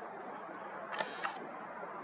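Camera lens zooming out, its mechanism heard through the camera's own microphone: a faint steady hiss with two short clicks about a second in.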